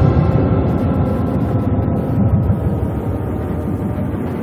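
Background music: a low, droning sustained chord with a rumbling bass that slowly fades.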